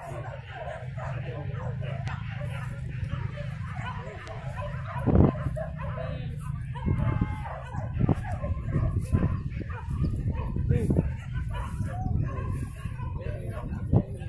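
Hunting dogs barking in bursts, strongest from about seven to eleven seconds in, with one sharp loud sound about five seconds in, over voices and a steady low rumble.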